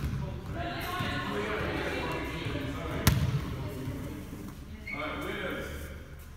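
Girls' voices calling and chattering in an echoing gym, with one sharp smack of a volleyball about three seconds in.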